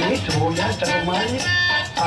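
Live Indian classical music: a gliding melodic line over a steady pattern of tabla strokes.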